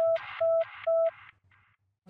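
News-programme intro jingle ending in a run of short electronic beeps, all of one pitch and about two a second, each with a hiss over it. The beeps fade out in an echo about halfway through.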